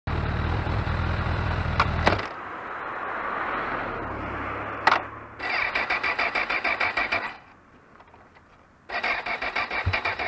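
Honda CB1000R inline-four running, with a couple of clicks; its engine note drops away after about two seconds. Later the electric starter cranks the engine twice, each time a rapid whirring chug lasting about two seconds, without the engine catching.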